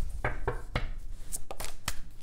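Tarot cards being handled as one is drawn from the deck: a quick series of light clicks and snaps of card stock.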